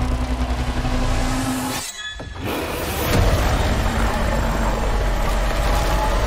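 Blockbuster movie-trailer sound effects: a dense, loud rumble with a held low tone, cutting out briefly about two seconds in, then coming back with a heavy hit and continuing rumble.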